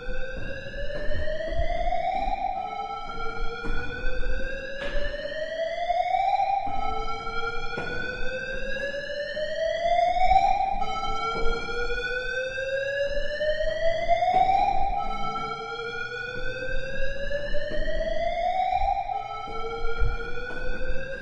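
Electronic siren-like sound effect. Overlapping pitched tones each glide upward over a couple of seconds and fade as the next one starts, over and over, so the pitch seems to keep rising.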